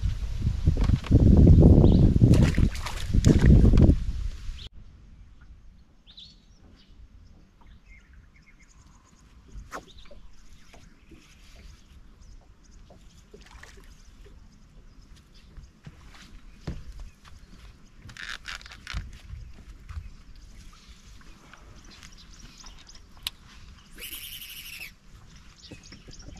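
A loud, rough rush of noise for the first four seconds or so, then quiet open-water ambience with scattered small clicks and ticks from tackle and boat handling, and a couple of short bird calls in the second half.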